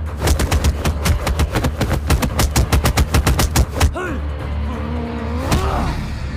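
A rapid flurry of film punch impacts, about eight hits a second for nearly four seconds, over a low music drone, then a man's yell near the end.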